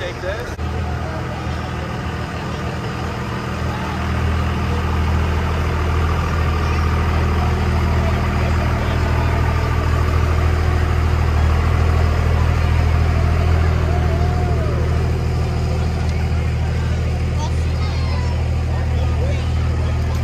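Engines of pickup trucks rolling past at a crawl: a steady low rumble that grows louder about four seconds in and holds, with crowd voices underneath.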